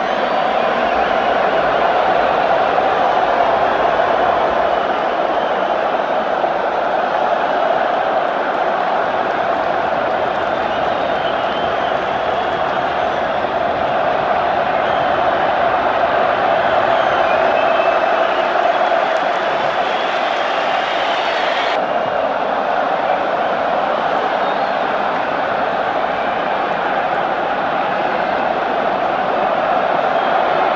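A packed football stadium crowd cheering en masse, a loud, steady din of thousands of voices that never lets up.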